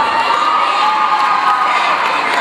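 Crowd cheering and shouting, with a long high-pitched held yell running through most of it while the cheerleaders' stunts are up.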